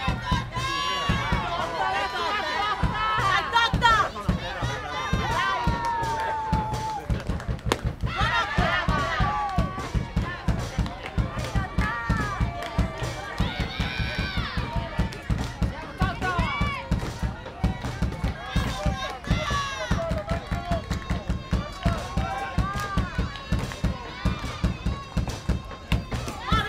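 Group of voices chanting and singing in sing-song cheers with a fast steady beat underneath: softball players cheering on their batter.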